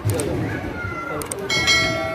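A sharp metallic clink about one and a half seconds in that keeps ringing with several clear tones, as a metal serving dish or steamer tray is knocked or set down. Before it there is a short high gliding cry.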